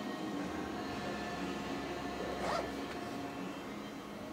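Steady low background hum of room tone, with a brief soft rustle about two and a half seconds in.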